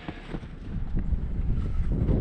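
John Deere 675B skid steer running, a low rumble that grows louder about a second in, with wind on the microphone.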